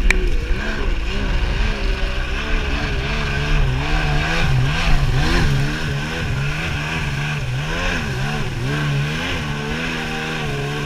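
Stand-up jet ski's engine running under way, its pitch rising and falling over and over as the throttle and hull work the water, then holding steady near the end, with a wash of water spray.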